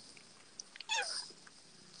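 A cat meowing once about a second in: a short meow that falls in pitch.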